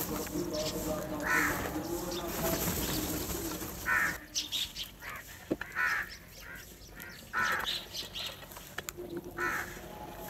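House crows cawing, about five short harsh caws spaced one to two seconds apart, with a few short clicks in between as the flock feeds at a bowl of grain.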